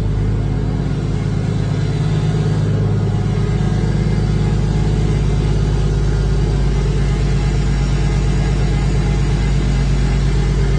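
Toyota 1JZ-GTE VVT-i turbocharged 2.5-litre inline-six running at a steady idle, just after it has been started.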